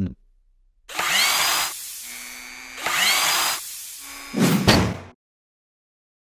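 Logo sound effect of mechanical whirring: two bursts about two seconds apart, each with a rising whine, then a shorter, louder hit near the end.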